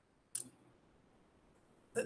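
A single short click, most likely a tongue or lip click from the speaker, about a third of a second in, then a brief breath or voice onset near the end; otherwise near silence.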